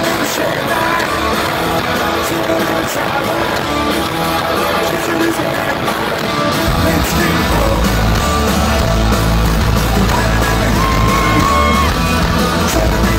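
Live rock band with electric guitar playing loud through a stadium PA, recorded from the crowd. The deep bass is absent at first and comes back in a little over halfway through.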